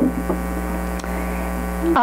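Steady electrical mains hum, a low buzz with a ladder of evenly spaced overtones, running without change.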